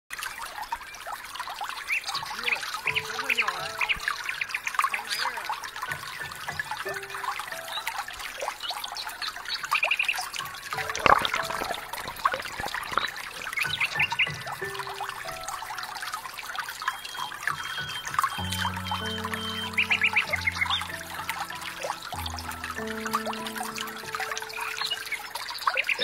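Water sloshing and trickling around a swimmer's strokes, picked up by a camera at the surface of a pool, under background music; the music's stepped low notes become clear about three quarters of the way through.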